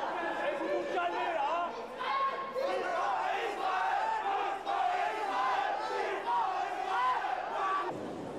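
Crowd of protesters shouting and chanting, many raised voices overlapping.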